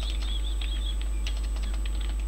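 Computer keyboard typing, irregular keystroke clicks, over a steady low hum.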